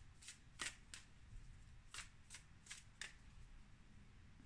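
Tarot deck being shuffled by hand: a run of faint, short card flicks, a few in the first second and a few more about two to three seconds in.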